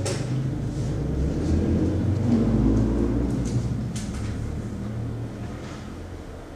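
A low rumble that swells about two seconds in and fades toward the end.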